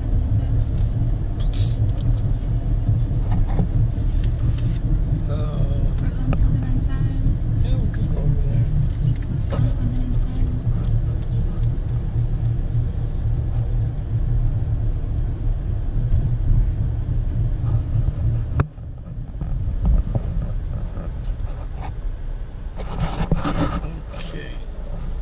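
Steady low rumble of a car's engine and road noise, heard inside the cabin while driving, with faint voices now and then.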